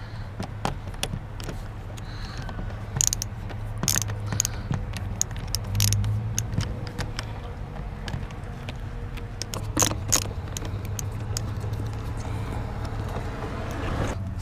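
Screwdriver turning the screws out of a car door's inner handle recess: irregular clicks and taps of the metal tool against the screws and plastic trim, with a few louder knocks, over a steady low hum.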